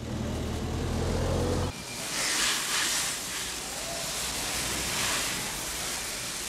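Factory machinery noise: a low steady hum that stops abruptly just under two seconds in, followed by a steady broad hiss.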